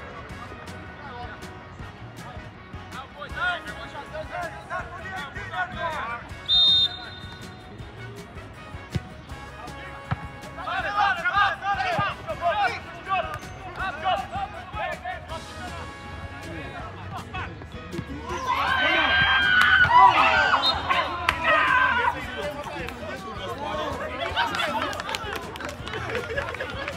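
Voices of players and people around an outdoor soccer pitch, calling and shouting, loudest for a few seconds near the end. A short, shrill referee's whistle blast comes about six and a half seconds in.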